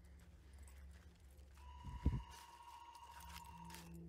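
A faint, steady high-pitched tone held for about two seconds over a low hum, with one soft thud about two seconds in.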